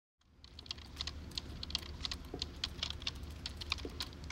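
Typing on a computer keyboard: quick, irregular key clicks over a low steady hum.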